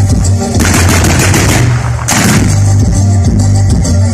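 Fireworks going off in rapid crackling volleys over loud music with a strong bass line: a long volley in the first half and a short one just after the middle.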